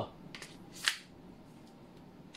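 A few faint clicks from handling a suppressed gas blowback airsoft pistol, the sharpest a little under a second in; no shot is fired.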